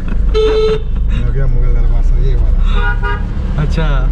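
Vehicle horn beeping twice in traffic, a short steady-pitched toot about half a second in and a second one near three seconds, heard from inside a moving car over its steady low engine and road rumble.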